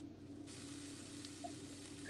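Faint sizzle of mushrooms sautéing in butter in a skillet, over a low steady hum.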